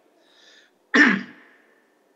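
A man clears his throat once, about a second in: a short, sharp vocal noise that fades quickly.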